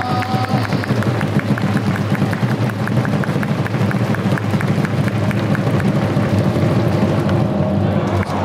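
Baseball stadium crowd cheering to a fast, even percussive beat of cheer drums or clappers. A short stretch of melody from the cheer song ends about half a second in.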